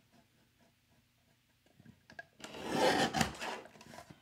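Paper guillotine trimmer cutting through black cardstock: after a near-quiet start, the blade's cut lasts about a second, beginning roughly two and a half seconds in.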